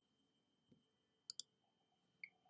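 Near silence with a faint hiss, broken by a quick pair of faint sharp clicks about one and a third seconds in.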